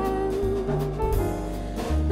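Jazz band playing an instrumental passage: double bass notes under a held melody line with vibrato, with drum kit cymbals.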